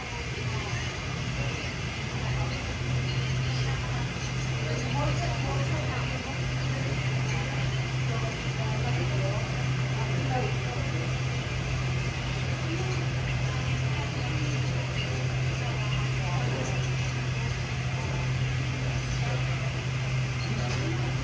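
A steady low hum runs throughout, with indistinct voices of people talking in the background.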